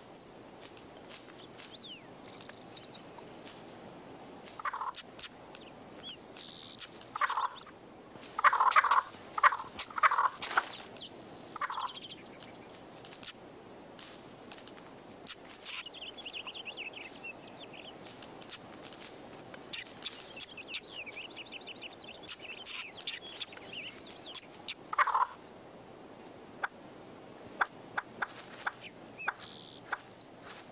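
Ptarmigan hen giving short, harsh clucking calls, in a loud cluster about eight to eleven seconds in and again around twenty-five seconds, the calls of a hen defending her nest from a weasel. Rapid high trills come in between, around sixteen seconds and again from about twenty to twenty-three seconds.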